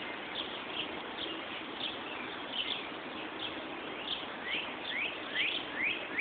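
Songbirds chirping: scattered short, high chirps, then a quick run of rising chirps, several a second, near the end, over a steady outdoor hiss.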